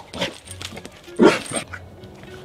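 American bulldog giving one short, loud bark a little over a second in, with a smaller yelp-like sound near the start, over background music.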